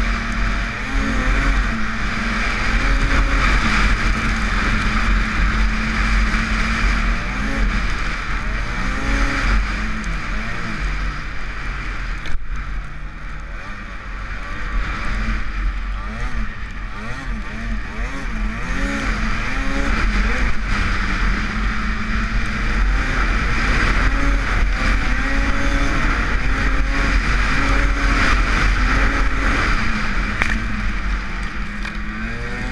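Arctic Cat M8000 snowmobile's two-stroke twin engine running under throttle through deep powder, its pitch rising and falling with the throttle. About twelve seconds in there is a sharp knock, and the engine eases off for a couple of seconds before pulling again.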